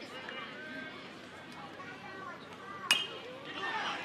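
Ballpark crowd murmuring with scattered distant voices, then about three seconds in a single sharp ping of a metal bat striking the ball.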